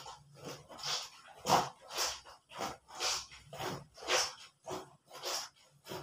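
Wet clothes being scrubbed by hand in a plastic basin of soapy water: fabric rubbed against fabric in a steady rhythm of wet rubbing strokes, about two a second.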